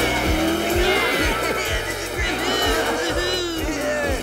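Upbeat soundtrack music with a steady bass beat about twice a second, under race-car sound effects for the toy cars setting off: engine revs rising and falling, and tyre squeals.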